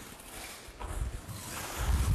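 Several people's bare feet sliding and pivoting on a training mat as they turn and step back together, with their cotton uniforms rustling and soft low thumps of footfalls about a second in and near the end.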